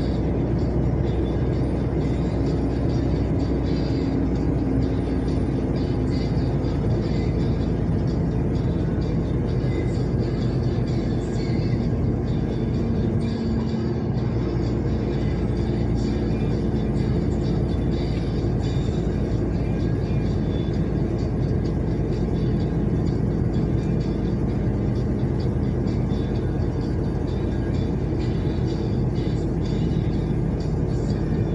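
Steady engine drone and road noise inside a moving truck's cab, with music playing over it. The engine's pitch shifts about halfway through.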